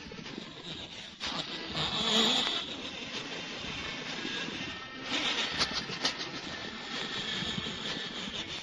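A 1960 78 rpm shellac record of an old Korean popular song playing, in an instrumental stretch with no singing, under heavy surface hiss and crackle from the worn disc.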